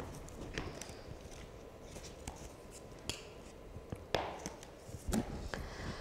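Faint handling noise of a book on a desk, a few soft rustles and light knocks scattered through a quiet pause, the clearest about four and five seconds in.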